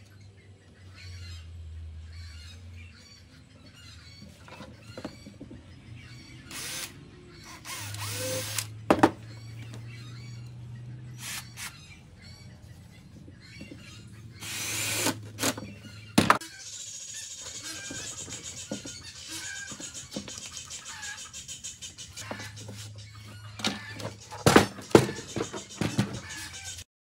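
Background music, with several short bursts of a cordless drill-driver running as it drives screws through a leather strap into the wooden chest.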